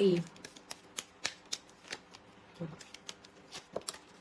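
Cards being handled in the hands: a string of irregular sharp little clicks and snaps. A woman gives a short "mm" about two and a half seconds in.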